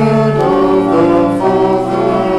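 Sung church music: a choir singing long held notes in harmony, moving from chord to chord.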